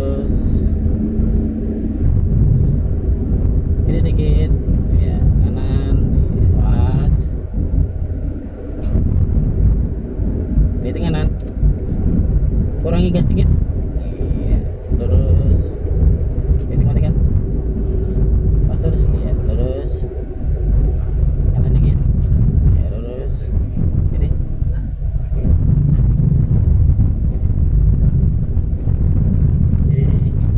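Steady engine and road rumble of a moving car, heard from inside the cabin, with indistinct voices breaking in now and then.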